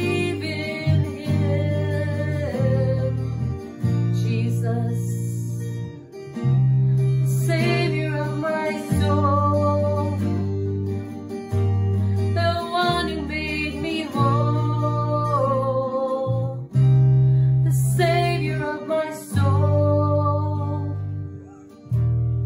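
A woman singing a worship song to an acoustic guitar, with the chords changing every second or two under long held sung notes.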